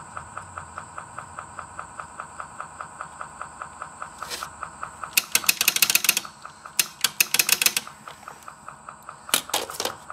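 Akai CR-80T 8-track deck's tape mechanism running with a rapid, steady ticking. Several bursts of quick, sharp mechanical clicks come as the track selector is worked. The play head is not stepping up and down between tracks, which the owner suspects is a jammed track-change mechanism.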